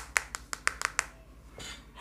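A quick run of about eight sharp clicks or taps within the first second, then a short soft hiss near the end.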